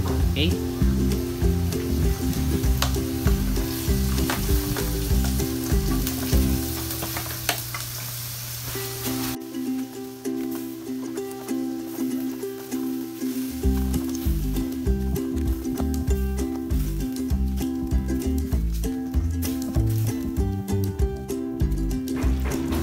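Blue crabs sizzling in a hot pan of buttery, sugary sauce, with scattered sharp knocks; the sizzle drops suddenly about nine seconds in. Background music plays throughout.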